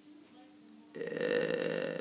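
A pause of near silence, then a man's low, held vocal sound for about a second: a drawn-out hesitation between two attempts at the same phrase.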